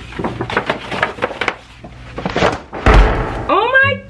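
Rummaging through stored items: a run of small knocks and rustles, then one heavy thump about three seconds in. Near the end a long wordless vocal sound begins, sliding in pitch.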